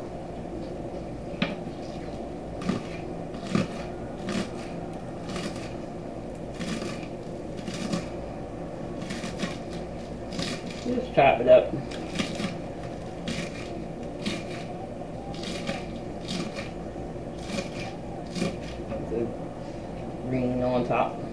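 Kitchen knife chopping scallions on a wooden cutting board: irregular knocks of the blade striking the board, about one or two a second. A short voice sound about eleven seconds in is the loudest moment.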